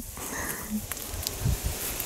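Soft footsteps through freshly mown grass, a few low thuds, with a faint short bird call about half a second in.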